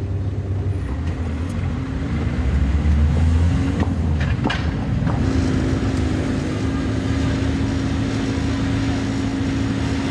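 A motor vehicle's engine running close by. Its pitch rises over the first few seconds and then holds steady, with a couple of brief knocks about four seconds in.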